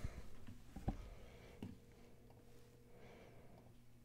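Very quiet room tone with a faint steady low hum, broken by two small clicks about one second and a second and a half in.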